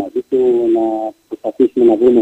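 Speech only: a voice talking, with no other sound.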